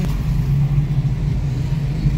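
Steady low rumble of a moving car heard from inside the cabin: engine and road noise while driving.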